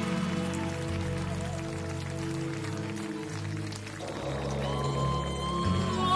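A progressive rock band playing live: an instrumental passage of held chords over a bass line that steps to a new note every second or so, with a steady high note coming in near the end.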